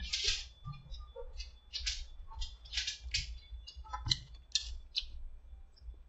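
Short, irregular slurps and mouth clicks, a couple a second, as a frozen slush drink is sipped through a straw and tasted, over a faint low hum.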